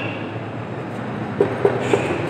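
Steady rumbling background noise with no speech, with three short ticks near the end.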